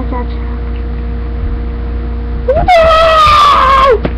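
A child's long, high-pitched scream, held about a second and a half in the second half, its pitch slowly falling and dropping at the end, over a steady low hum.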